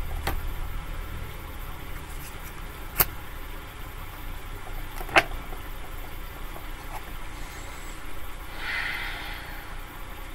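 Tarot deck being handled and shuffled by hand: two sharp card snaps, about three and five seconds in, and a short rustle near the end, over a steady low rumble.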